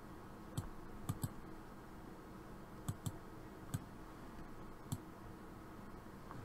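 Computer mouse button clicking: about seven short, sharp clicks at uneven spacing, some in quick pairs, over a faint steady hum.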